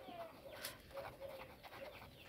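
Faint scratching of a pen writing on lined notebook paper, in short strokes. Several faint short tones sound in the background.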